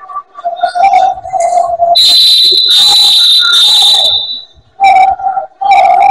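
Referee's whistle blown in one long, loud blast of about two seconds, starting about two seconds in, stopping play. Near the end a second, lower steady tone sounds twice.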